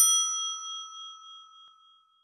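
A single bell-like ding struck once as a logo chime, with a clear high ringing tone that fades away with a slight wobble over about two seconds.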